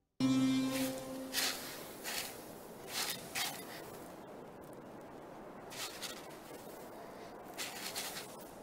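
Paintbrush sweeping sand off a buried object: a series of short brushing swishes in irregular groups over a soft steady hiss. A brief low tone sounds near the start.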